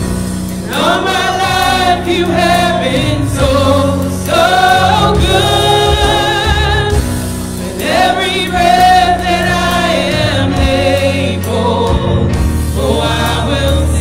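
Live gospel song from a small group of women singers with a keyboard and drum accompaniment, sung in long held phrases with vibrato and short breaths between them.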